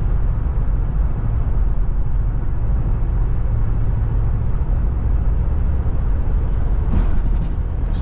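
Steady low rumble of a car's engine and tyres on the road, heard from inside the moving car.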